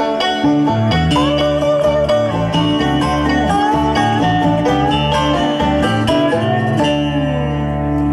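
A bluegrass band playing an instrumental passage on acoustic guitar, mandolin, banjo and bass, under a steel-guitar lead that slides from note to note.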